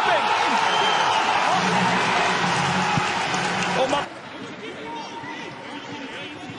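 Loud cheering and shouting voices as a goal goes in. They cut off abruptly about four seconds in, leaving a much quieter background of match sound with faint voices.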